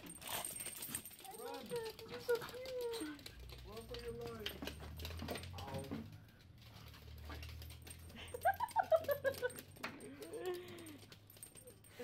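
Several small dogs, a miniature schnauzer among them, playing and wrestling on a hardwood floor: scuffling and light clicking of claws and collar tags, with a few short whining calls, the loudest about two-thirds of the way through.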